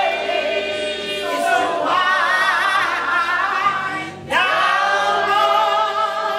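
A woman singing a gospel song unaccompanied into a microphone, holding long notes with wide vibrato and breaking briefly for a breath about four seconds in.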